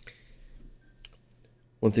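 Faint, light clicks from small painting tools and the figure's holder being handled; a man starts speaking near the end.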